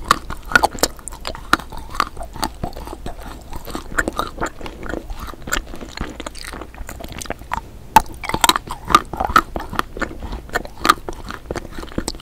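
Biting and chewing an edible spoon: a dense, irregular run of small crunches and wet mouth clicks, busier around eight to nine seconds in.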